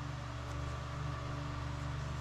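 Steady low electrical hum with a faint even hiss: background noise of the room or recording, with no distinct event.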